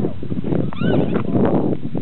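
Sheep bleating, one arching call a little under a second in, over a steady rumbling noise.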